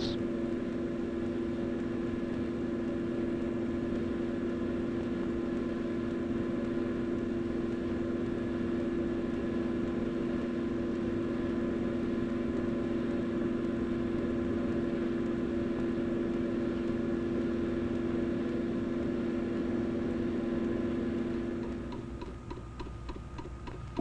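Steady machine hum holding a few fixed tones, unchanged for most of the stretch, that drops away near the end, leaving a quieter fast ticking.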